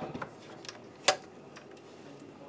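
A few light clicks and knocks as an Icom IC-7300 transceiver is turned round and handled on a desk, the loudest about a second in.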